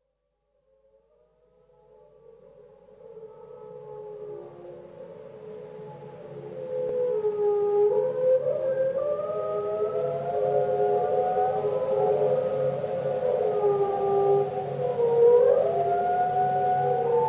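Recorded whale song fading in from silence: long gliding, bending calls over a low pulse, growing louder about seven seconds in, as the opening of a track.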